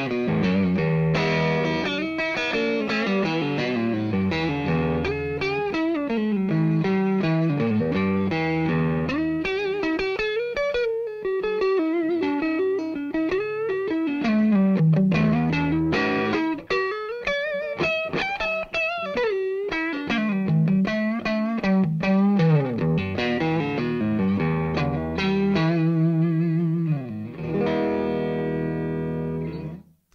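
Electric guitar played through a DiMarzio True Velvet single-coil neck pickup: a melodic lead passage mixing chords and single notes, with wavering vibrato on held notes, ending on a sustained chord that stops sharply.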